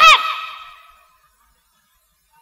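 A woman's amplified voice ends on a high, drawn-out exclaimed word through the microphone and PA. Its echo dies away within about a second, followed by dead silence.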